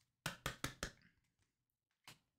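Trading cards and packs being handled on a tabletop: four quick, light knocks within the first second, then quiet.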